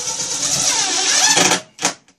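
A DeWalt cordless drill driver spins a pan-head sheet metal screw through a steel shelf bracket into particle-board shelving. The motor runs for about a second and a half, stops, then gives one short burst near the end.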